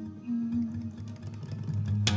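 Steel-string acoustic guitar and resonator guitar playing an instrumental passage together, with a note bending up in pitch at the start.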